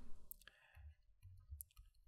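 A few faint, scattered clicks in a near-quiet pause: a stylus tapping on a drawing tablet while figures are written.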